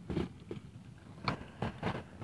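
A few faint, short rustles and light taps, spaced irregularly, from hands handling fishing tackle.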